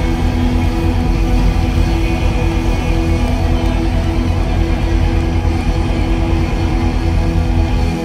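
Live rock band playing a loud instrumental passage, electric guitar holding sustained notes over heavy bass.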